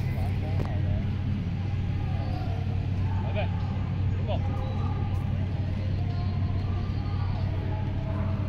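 A steady low hum throughout, with faint voices in the background and a couple of short rising calls about three and four seconds in.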